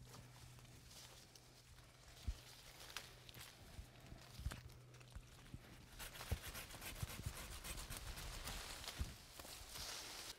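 Hand pruning saw cutting through a myrsine branch overhead, with leaves and twigs rustling: a few faint scrapes and clicks at first, then quick sawing strokes from about six seconds in.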